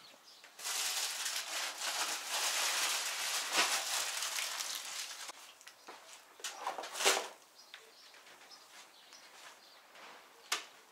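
Rustling noise for about five seconds, then a few separate knocks.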